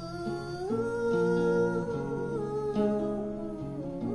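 A woman's voice singing a wordless, humming-like melody with held, gliding notes over plucked acoustic guitar, as part of a live folk song.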